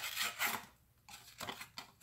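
Civivi Dogma folding knife's thin clip-point blade slicing through a thin cardboard box. A short rasping cut comes right at the start and another about half a second in, then fainter scraping strokes follow.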